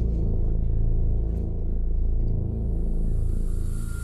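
Low, steady rumbling drone from the TV episode's soundtrack, with a faint high hiss rising in during the second half.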